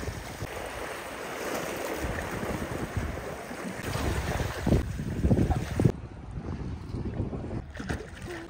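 Wind buffeting the microphone over surf washing against the rocks: a steady rushing hiss, with the gusts strongest about five seconds in. Near six seconds the hiss drops suddenly.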